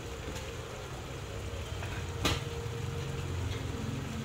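Gas burner under a wok running with a steady low rumble, and a single sharp click about two seconds in.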